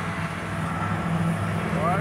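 Shindaiwa 2620 string trimmer's small two-stroke engine running at a steady low speed.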